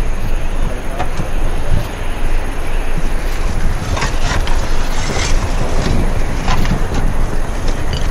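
Clay roof tiles clinking and clattering as they are gathered from a pile and stacked, with a quick run of sharp knocks about four to five seconds in, over a steady low rumble.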